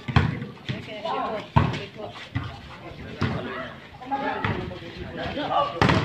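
A volleyball being struck during a rally: a few sharp hits, a second or more apart, the last one at the net near the end as a spike. Players' voices call out across the court between the hits.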